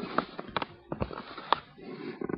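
Rustling and several sharp knocks as a Cavalier King Charles spaniel wriggles on her back on a lap under a stroking hand.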